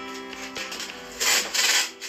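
Background music with steady sustained tones, and about a second in, two short loud rubbing strokes from cleaning a window frame by hand.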